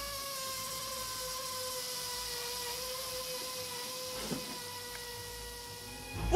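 A single sustained tone with overtones, held for about six seconds with a slight waver and sinking a little in pitch, with a faint click about four seconds in.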